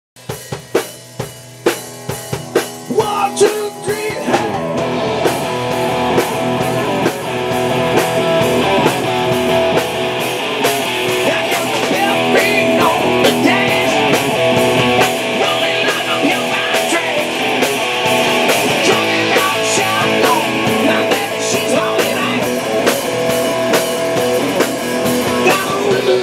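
Live rock band playing the instrumental intro of a song: electric guitar through Blackstar amplifiers and a drum kit. It opens with separate, punchy hits for the first few seconds, then the full band settles into a steady, dense groove from about four seconds in.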